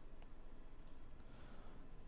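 A few faint computer mouse clicks over low room hiss, as a menu entry is chosen.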